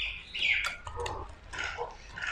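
Wire whisk beating a chunky egg-and-vegetable batter in a glass bowl: irregular strokes of the wires scraping and clicking against the glass, with wet slaps of the batter.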